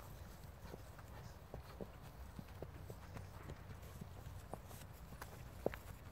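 Hooves of horses walking on dry ground: faint, irregular footfalls, with one sharper knock near the end.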